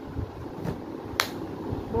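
A single sharp click about a second in, over faint room noise.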